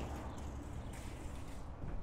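Footsteps on a plywood trailer ramp and floor, a few faint knocks, over a steady low rumble of wind on the microphone.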